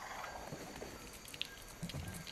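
Faint forest ambience on a film soundtrack, with scattered small clicks and rustles.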